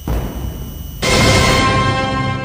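A sudden sustained musical sting cuts in about a second in and rings on, slowly fading. It is the game show's time-up signal.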